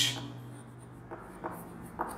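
Chalk writing on a chalkboard: a few faint, short scratchy strokes as a word is written.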